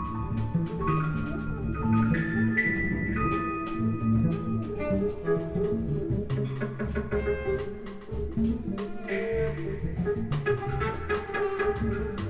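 A live jazz band playing, with drum kit, double bass, piano and keyboards, tenor saxophone and trumpet. Held notes step up and down in pitch over the first few seconds, above a busy bass line and a steady patter of drum hits.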